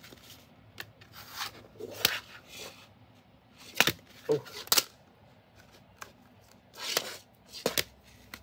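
Plastic CD jewel case handled on a table: a few sharp clacks as it is picked up, turned over and set down, with soft rubbing and sliding between them.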